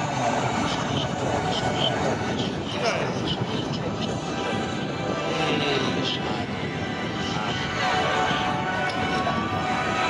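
Pilatus PC-9 single-engine turboprop trainers flying over in formation, heard under voices and music. A tone rises slowly in pitch over the last couple of seconds.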